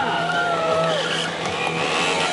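KTM 125 Duke's single-cylinder four-stroke engine revving up and down as a stunt rider throws the bike around.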